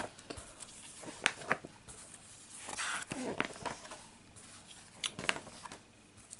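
Paper pages of a LEGO instruction booklet being turned: soft rustling with a few crisp flicks, a longer rustle about halfway through, and two more flicks near the end.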